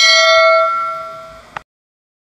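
Notification-bell sound effect: one bright chime struck once, ringing and fading over about a second and a half, then a short click just before the audio cuts off.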